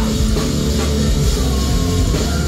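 A rock band playing live and loud, with electric guitars, bass and a drum kit in a dense, steady wall of sound.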